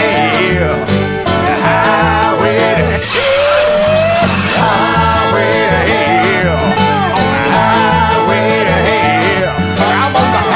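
Bluegrass band playing an instrumental break: banjo and guitar picking over a steady, rhythmic bass line. About three seconds in there is a brief noisy swell with a rising held note.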